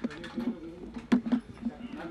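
Camera shutters clicking several times over low background voices and chatter.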